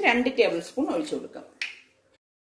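A woman talking in Malayalam, her speech stopping shortly before the end.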